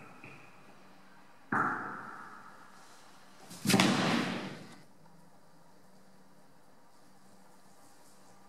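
Two sudden bursts of sound about two seconds apart, the second louder, each dying away over about a second: hands sweeping across a drawing surface on the floor, picked up by a contact microphone and played through an effects pedal.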